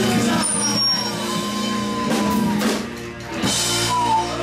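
Live rock band playing: electric guitars, bass and drum kit, with several loud drum strikes in the second half and a brief dip in level about three seconds in.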